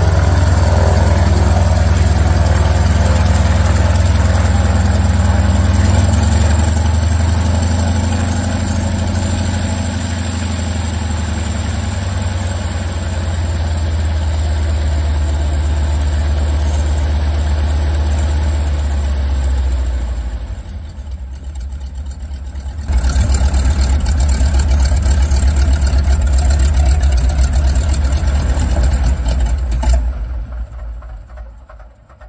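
North American Harvard's Pratt & Whitney Wasp radial engine idling on the ground with a deep, steady note. It drops back about twenty seconds in, then comes up louder and rougher a few seconds later.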